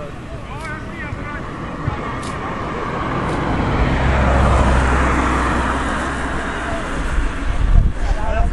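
A road vehicle passing by: its noise swells to a peak about halfway through, with a low rumble, then fades away.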